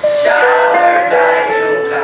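A small mixed group of young male and female voices singing together as a choir, holding sustained notes that step from one pitch to the next about every half second.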